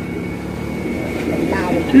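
A steady low rumble of outdoor background noise, like a motor or traffic drone, with faint voices in the crowd.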